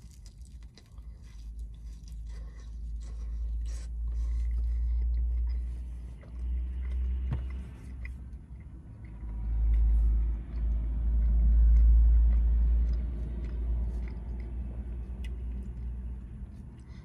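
A man biting into and chewing a thin-crust pizza slice, with small crunching clicks. Under it runs a low rumble that swells and fades, loudest from about ten to thirteen seconds in.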